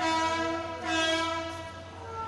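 Train horn sounding one steady blast of several tones together. It starts abruptly, swells louder again about a second in, and fades near the end.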